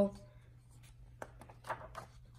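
A picture book's paper page being turned, a few light clicks and then a short rustle near the end.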